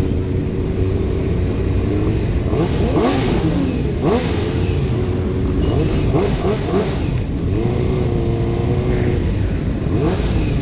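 Sport-bike engines in a slow-rolling group ride: a steady engine note with a low rumble underneath, and several quick revs rising and falling about three to four seconds in and again around six to seven seconds.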